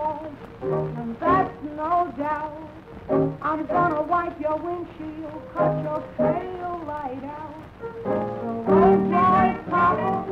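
Late-1920s jazz band record playing an instrumental passage in short, broken phrases, with the narrow, dull range of an old recording; the full band comes in louder near the end.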